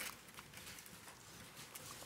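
Faint rustling and light clicks of paper Bible pages being turned to look up a passage.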